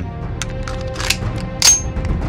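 Several sharp metallic clicks, then a louder ringing clang near the end, laid as sound effects over background music.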